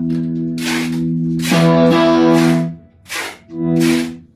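Stratocaster-style electric guitar played through its middle single-coil pickup: a phrase of sustained, ringing notes with a slide in pitch partway through. It pauses briefly about three seconds in before one more note.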